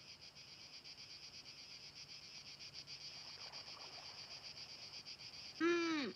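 Insects chirring steadily in a fast, even pulse. Just before the end, a short voice sound falling in pitch, the loudest sound here.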